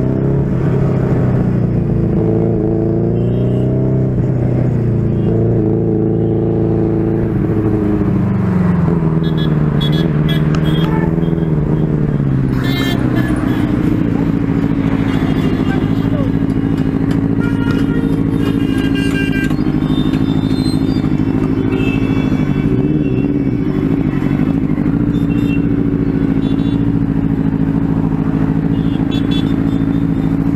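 Benelli TNT 600i's inline-four engine rising and falling in speed through the first dozen seconds, then idling steadily once the bike stops.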